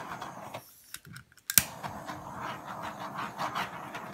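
Handheld butane torch being held over a wet acrylic pour. After a few light clicks, it snaps on with a sharp click about a second and a half in, then hisses steadily as it plays over the wet paint.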